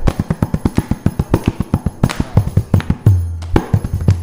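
Mridangam played in a fast run of crisp strokes, about eight to ten a second, with resonant low bass strokes near the end: the percussion solo (tani avartanam) of a Carnatic concert, with no voice or violin.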